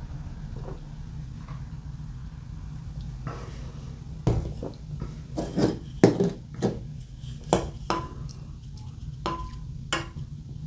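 About ten light knocks and clicks of things being set down and handled on a tabletop, bunched in the second half. A couple of them near the end ring briefly, like glass. A steady low hum runs underneath.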